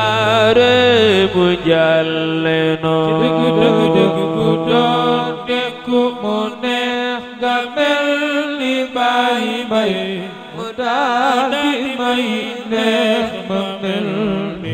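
A male voice chanting an Islamic religious song in long, ornamented held notes with a wavering vibrato. A steady low note is held beneath the voice for the first few seconds.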